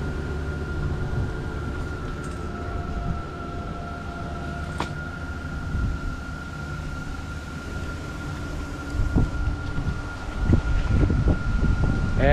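Wind rumbling on the microphone, with a thin steady high-pitched tone running through it. One click comes near the middle, and the low bumps grow louder in the last few seconds.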